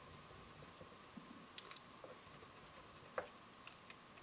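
Near silence, with a few faint ticks and a brief faint scrape about three seconds in: a wooden craft stick rubbing a rub-on transfer down onto a paper journal page.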